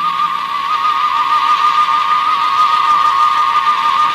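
Cartoon sound effect of a lit fuse burning: a steady hiss over a single wavering tone.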